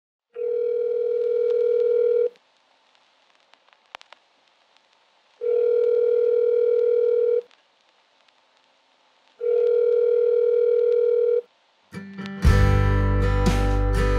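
Telephone ringback tone heard down the line: three steady two-second rings with gaps of two to three seconds between them, the call ringing unanswered. Near the end a click as the line picks up, and music comes in.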